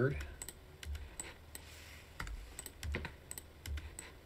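Scattered clicks of computer keyboard keys and a mouse, a dozen or so irregular taps as keyboard shortcuts are pressed and a selection is clicked.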